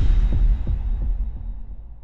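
A deep, low boom from an intro sound effect, hitting at the start with a few throbbing pulses in the first second, then fading away slowly.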